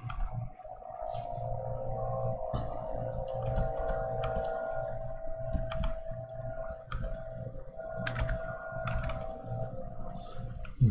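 Distant lawnmower engine droning steadily, with scattered light clicks and taps from drawing on a pen tablet at the desk.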